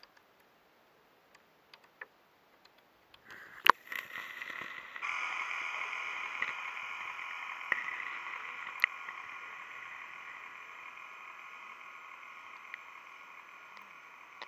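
Sounds picked up by a camera submerged in a flooded gravel pit: a few faint ticks, a sharp click a few seconds in, then a steady whirring hiss with several held tones that sets in about five seconds in and slowly fades.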